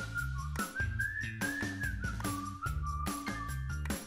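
Background music: a whistle-like lead melody over a bass line and a beat.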